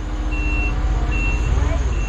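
Propane Cat forklift's backup alarm beeping, three evenly spaced high beeps a little under a second apart, over the forklift's engine running.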